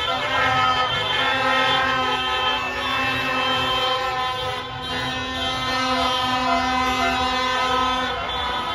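Many car horns honking at once, several held for seconds, over crowd voices and slow traffic; one low horn tone holds until near the end.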